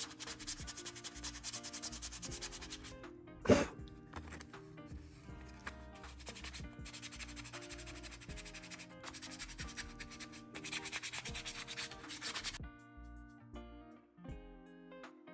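Sandpaper rubbing by hand over a filler-primed 3D-printed plastic helmet shell in repeated rough strokes, smoothing down the high spots with 220 grit. One stroke about three and a half seconds in is sharper and louder. The sanding stops near the end, leaving soft background music.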